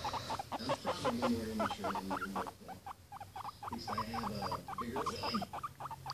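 Guinea pig squeaking close to the microphone: a fast run of short squeaky notes, several a second, with a brief lull about three seconds in.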